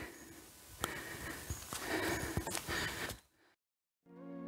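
A hiker's breathing and footsteps on a dirt forest track, with a few scattered sharp steps; the sound cuts off to silence a little after three seconds in.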